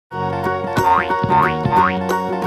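Cheerful intro jingle music with three quick rising cartoon "boing" sound effects, one after another, in the second half.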